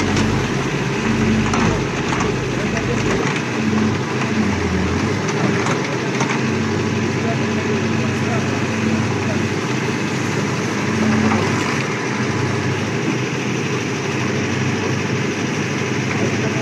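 Caterpillar backhoe loader's diesel engine running as its rear arm digs debris out of a canal. The engine note strengthens at intervals as the hydraulics work.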